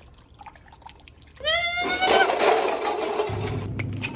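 A brief rising tone, then water splashing and spilling for about a second and a half, as a drink pours down over a person's face and shirt.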